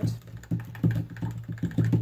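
An irregular run of light knocks and taps of objects being handled on a tabletop, several a second, with no speech.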